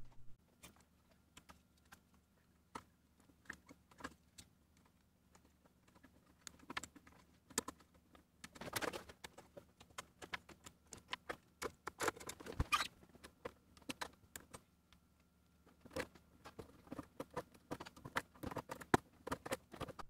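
Plastic keycaps being pushed onto the 3D-printed key stems of an HP-86 keyboard: faint, irregular plastic clicks and clacks. They are sparse at first and come thick and fast after about six seconds.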